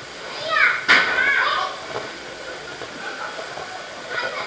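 Children's high-pitched excited voices and shouts, with one sharp knock about a second in.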